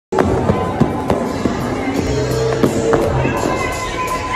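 Roller-rink sound: music playing over the rink speakers, voices, and scattered sharp clacks and knocks of roller skates on the wooden floor.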